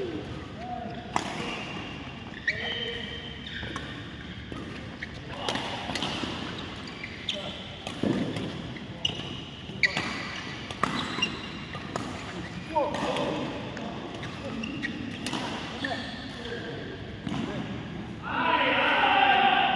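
Badminton rally: sharp racket-on-shuttlecock hits at irregular intervals, about one a second, with short squeaks of shoes on the court mat.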